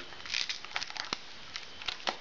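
Inflated latex modelling balloons rubbing and creaking against each other and the fingers as small bubbles are twisted, in a few short bursts with a sharp click a little after one second.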